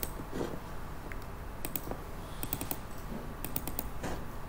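Computer keys clicking in three short quick bursts, about a second apart, over a low steady background hum.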